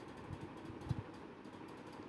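Quiet room tone: a faint steady hiss with a couple of soft low bumps just before halfway.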